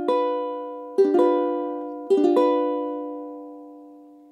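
Balnna concert ukulele strumming a G7 chord: a strum at the start, two quick strums about a second in, two more about two seconds in, and the last one left to ring and fade away.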